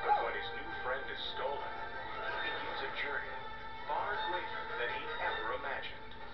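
Film trailer soundtrack heard through a television's speaker: music running under short cries and vocal sounds.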